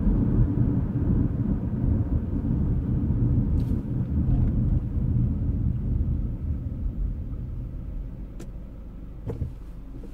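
A car being driven, heard from inside the cabin: a steady low rumble of engine and road noise that gets quieter over the last couple of seconds.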